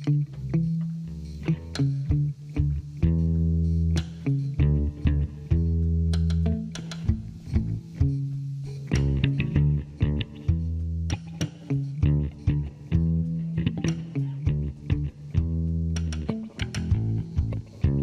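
Instrumental band music: an electric guitar picks a stream of single notes and short phrases over sustained low bass notes, with no singing.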